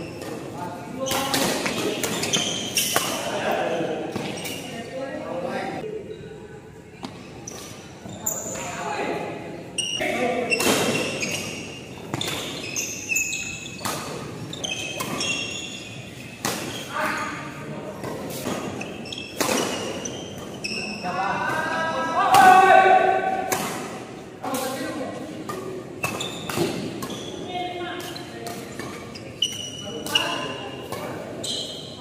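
Doubles badminton rallies echoing in a large hall: sharp racket strikes on the shuttlecock, squeaks of shoes on the court and players' calls and shouts, with one louder shout about two-thirds of the way through.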